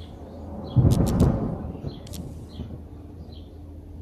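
A single thunderclap from a music video's rainy opening: a sudden low rumble with a few sharp cracks about a second in, dying away over the next second. A faint steady hum lies underneath.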